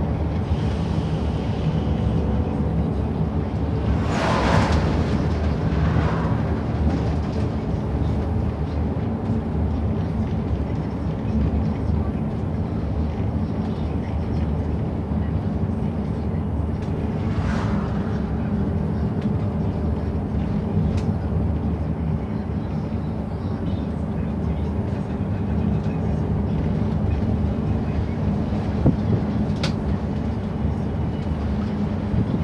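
Coach bus engine running with a steady low drone, heard from inside the passenger cabin. Brief hisses come about 4, 6 and 17 seconds in.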